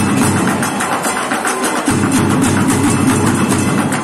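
Group drumming with sticks on improvised drums made from plastic buckets, containers and a plastic barrel: a fast, dense, continuous rhythm with a deep, hollow low end.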